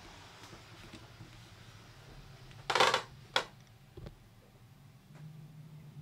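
Quiet cabin with brief handling noises: a short rustle about three seconds in, then a click and a soft knock. A low steady hum comes in near the end.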